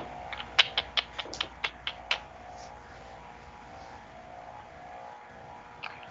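A quick, irregular run of about ten sharp clicks at a computer in the first two seconds, then only a faint steady hum.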